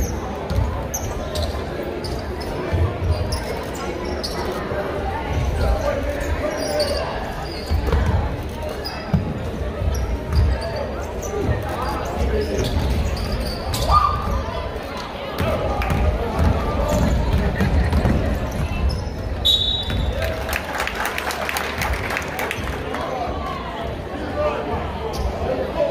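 Basketball dribbling with repeated thumps on a hardwood gym floor, sneakers squeaking, and spectators chattering in the echoing gymnasium. A short high referee's whistle sounds about twenty seconds in.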